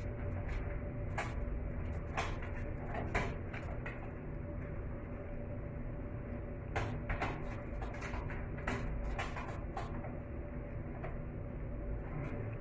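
Metal door latch being worked by hand: scattered clicks and rattles in several short clusters, over a steady low background hum.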